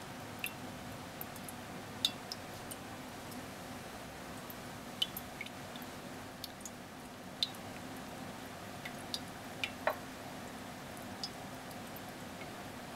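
Steady low hum of a quiet lab room with scattered faint, sharp clicks and ticks, roughly one or two a second, while water is poured slowly into the tubing of a sand-column aquifer model.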